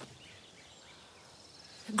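Faint outdoor background ambience, a soft even hiss, with a faint high thin trill a little past the middle.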